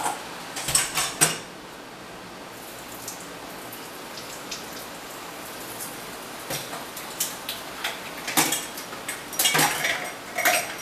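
Kitchen tap running into a stainless-steel sink, with sharp clinks and clatters of dishes being handled. A quick cluster comes about a second in, and more frequent clatters come over the last few seconds.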